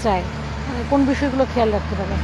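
Bengali conversation, with a steady low rumble underneath.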